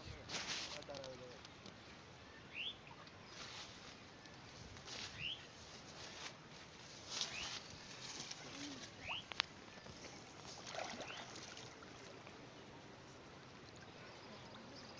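Pond water sloshing and splashing in short bursts as two boys wade waist-deep, groping for fish by hand. A bird gives short rising chirps every couple of seconds, and there is one sharp click about nine seconds in.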